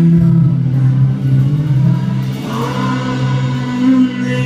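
A live band playing a slow passage of steady, sustained chords, with a strummed acoustic guitar over long held low notes, and no words sung.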